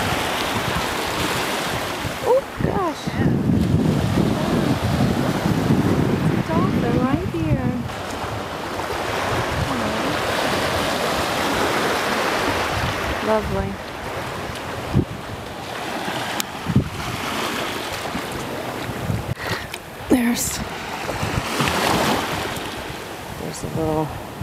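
Small Gulf of Mexico waves washing in and out over the sand at the surf's edge, swelling and easing every several seconds, with wind buffeting the microphone.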